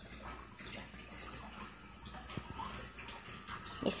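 Faint, steady trickle of water from an aquarium filter running, with a couple of soft clicks about halfway through.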